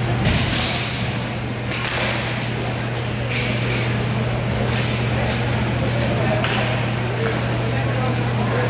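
Roller hockey game echoing in a large hall: sticks and puck clacking on the plastic floor in irregular sharp strikes, over a steady low hum and distant, indistinct voices of the players.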